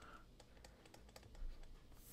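Faint, irregular clicks and taps of a pen stylus on a drawing tablet as a word is handwritten, with one slightly louder soft knock about one and a half seconds in.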